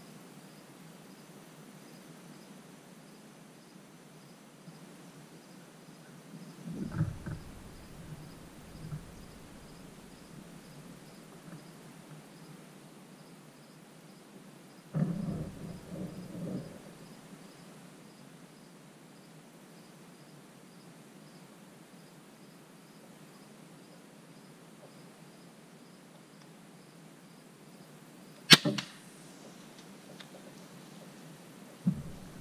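Crossbow shot: one sharp snap of the string and limbs releasing near the end, with a short trailing clatter. Earlier there are two brief bouts of low rustling and knocking, and insects keep up a faint, steady, regular chirping throughout.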